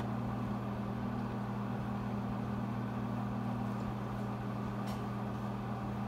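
Steady low hum of an overhead projector's cooling fan and lamp, with two constant low tones under a faint hiss. A faint brief scratch of a marker writing on the transparency comes about five seconds in.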